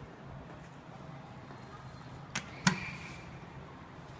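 Two sharp knocks about a third of a second apart, the second louder with a brief ring, over a faint steady hum.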